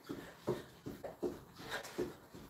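Soft, rhythmic footfalls of high-knee jogging on the spot on a rug, about three steps a second.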